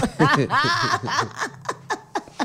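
A man and a woman laughing together: a burst of laughter in the first second, trailing off into short chuckles.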